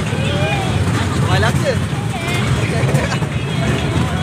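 Fairground ride running with a steady low rumble, under a hubbub of riders' voices and shouts.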